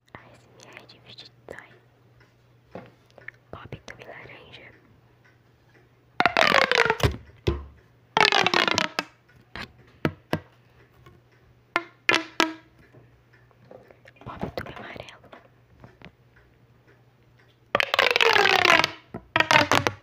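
Fidget toys handled close to a microphone for ASMR: scattered soft clicks and taps, with a few louder bursts whose pitch slides downward, the loudest about six seconds in, eight seconds in and near the end.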